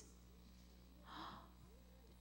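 Near silence: room tone with a low steady hum, and one faint short breathy sound a little after a second in.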